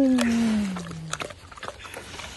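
A pig giving one long call that slides down in pitch and fades out a little past a second in, followed by a few faint clicks.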